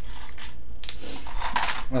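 Clicks and knocks of a desktop PC case's front panel being worked off the metal chassis by hand: one sharp click just under a second in and a quick cluster of clicks a little later, over a steady low hum.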